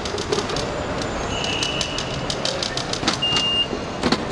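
Loaded airport luggage cart rolling over brick pavers, its wheels rattling and clicking over the joints, over busy curbside noise. Two steady high-pitched tones sound over it: one lasting about a second from the middle, a shorter one near the end.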